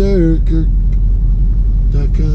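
Steady low rumble inside the cabin of a Chevrolet Corvette C7 with its V8 running, after a few words from a man at the start.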